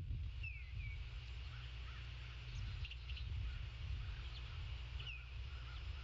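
Birds giving short, high, descending chirps, a couple about half a second in and another about five seconds in, with faint smaller calls between, over a steady low rumble of wind on the microphone.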